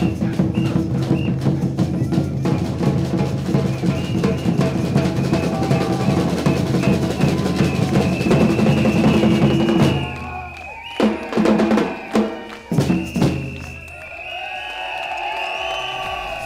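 Street percussion band with large bass drums playing a fast, even drum rhythm that stops about ten seconds in, followed by a few single drum hits.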